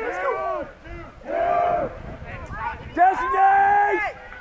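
Shouted calls during a boys' lacrosse game. A short shout comes first, then two long drawn-out calls, the last held for about a second near the end.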